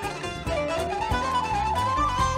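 Turkish folk ensemble playing an instrumental introduction: plucked bağlama saz with a full band underneath, and a held, slightly wavering melody line, carried by the kaval flute, entering about half a second in as the music gets louder.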